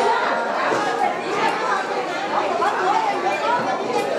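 Chatter of a roomful of people talking at once, an even babble of overlapping voices.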